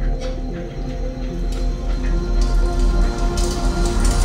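Live electronic music played from a laptop: a deep steady drone under several held tones, with crackling clicks in the first half and a high hissing layer that comes in partway through and grows near the end.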